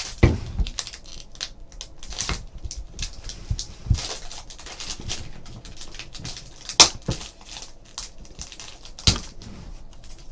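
A trading-card pack wrapper being torn open and crinkled, and the cards inside handled: a string of crackles and rustles with a few sharper snaps, the sharpest about seven seconds in.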